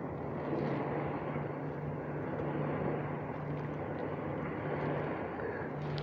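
A small boat's motor running with a steady low hum, under a wash of wind and water noise.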